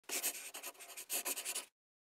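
Quick scratching strokes like a pen writing on paper, in two rapid runs, cutting off suddenly after under two seconds.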